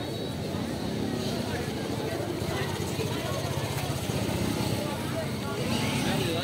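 Busy city street at night: several people talking at once nearby, over a steady wash of traffic noise.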